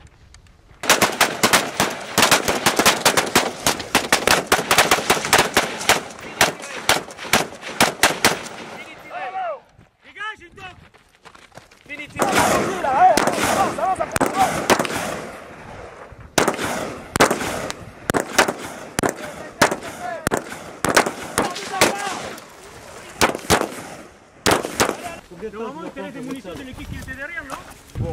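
Rapid gunfire from several assault rifles, the shots overlapping in a dense stretch of about eight seconds. After a short pause a second long stretch of firing follows.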